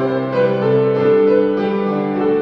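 Grand piano played solo: a slow passage of held chords, with new notes entering every half second or so.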